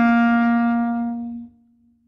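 Clarinet holding one long note that fades away and stops about one and a half seconds in.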